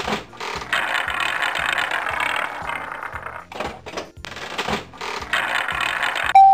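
Rattling, clicking spin sound effect of a cartoon prize wheel turning, with short breaks a little past the middle, over a faint regular low beat.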